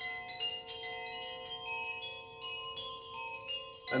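Metal chimes tinkling: light struck notes at irregular moments over a few steady ringing tones.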